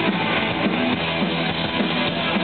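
Live pop-punk band playing: electric guitars strummed over a drum kit, loud and steady.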